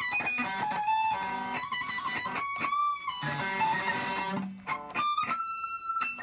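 Electric guitar playing single high notes near the top of the neck, up to the 24th fret on the high E string: a few sustained notes, some wavering or bent, with short gaps between them. The playing is a little clumsy, because the top frets are hard to reach on this guitar.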